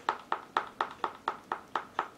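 A stir stick knocking against the inside of a cup while thick acrylic pouring paint is stirred: a steady run of sharp clicks, about four a second.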